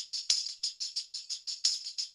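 Hi-hat loop from a hip-hop beat playing on its own: a fast, even run of short, crisp ticks, about eight a second.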